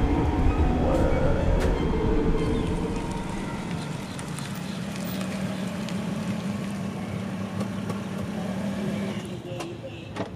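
A car rolling in and stopping, with a loud low rumble at first, then its engine running with a steady hum that stops shortly before the end.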